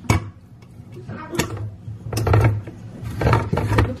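Handheld manual can opener clamping onto a steel can with a sharp click, then cranked in three short bouts as its cutting wheel works around the lid.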